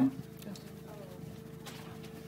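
A man's amplified voice finishes a word, then a lull with a faint steady hum and a couple of soft knocks.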